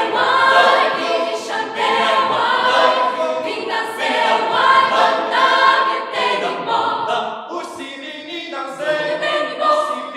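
Mixed choir of men and women singing in close harmony, a rhythmic chant, growing briefly softer about eight seconds in.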